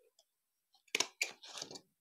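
A hand stapler clicks shut through folded joss paper about a second in, followed by paper rustling as the stiff folded pieces are handled.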